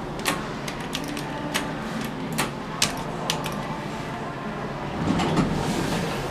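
Schindler hydraulic elevator car travelling upward: a steady low hum of the ride, with a few sharp clicks and rattles in the first half.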